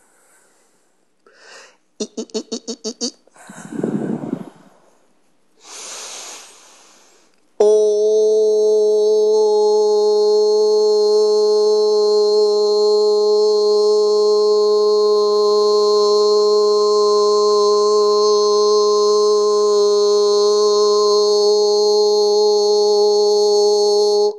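A person's voice making non-word sounds: a fast pulsing trill, a couple of breaths, then about seven seconds in one long, steady held tone with many overtones.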